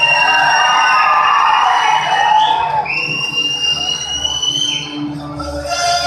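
Two long, shrill whistles, each about two and a half seconds, one after the other. Each rises in pitch at the start, holds steady and drops at the end. They sound over dance music.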